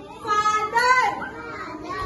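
Voices of young children, with a woman's voice among them, in a classroom; they fade after about a second and a half.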